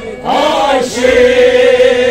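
Kashmiri Sufi devotional singing: after a brief dip, a voice rises through a short phrase and holds one long steady note from about a second in.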